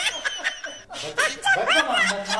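A man's wordless vocal sounds: short, broken cries and snickering noises, with one cry rising sharply in pitch near the end.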